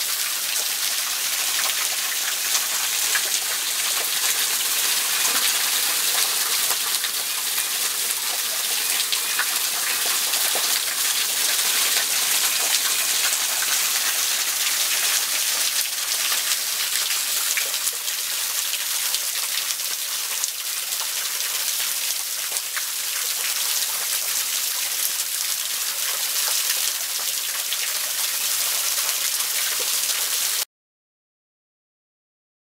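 Small waterfall running down a mossy rock face, its streams and drops splashing steadily onto rocks and a shallow pool below.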